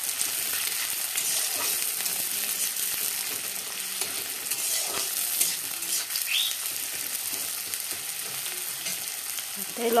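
Chopped onions sizzling in hot oil in a metal kadai, stirred now and then with a metal spatula that scrapes against the pan, with a short squeak about six seconds in.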